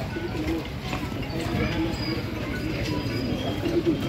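A bird cooing over and over in low, wavering calls, with faint chirps and voices in the background.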